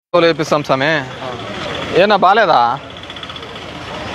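Men's voices talking outdoors in short phrases, then a steady background noise for the last second or so.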